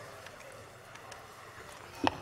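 Quiet room tone picked up by the podium microphone, with a few faint clicks and light rustling from papers being handled at the podium.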